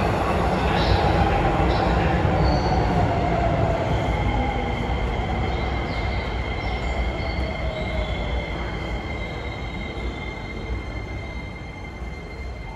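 Keisei electric commuter train pulling into the platform and slowing to a stop. Its running noise fades steadily under a falling motor whine, and a steady high squeal comes in after a few seconds.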